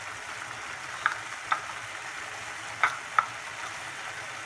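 Thick carrot halwa cooking down in an aluminium pressure-cooker pan, with a steady sizzle and bubbling. Four short, sharp clicks stand out, two about a second in and two near three seconds in.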